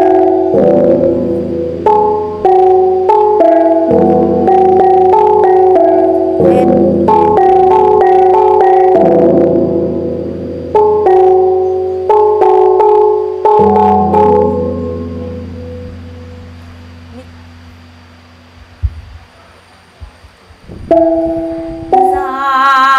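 A Mường gong ensemble (chiêng Mường), bronze gongs struck with padded mallets, playing an interlocking melody of ringing pitched strokes. About two-thirds of the way in the strokes stop and the gongs ring out and fade, then a few new strokes begin near the end.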